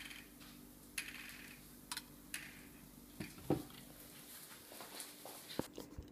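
Mostly quiet, with a few faint, scattered clicks and knocks as a white cupboard door is pushed shut; the loudest knock comes about three and a half seconds in.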